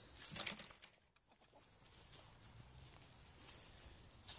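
Faint clucking of backyard hens, a short burst in the first second, then quiet outdoor ambience.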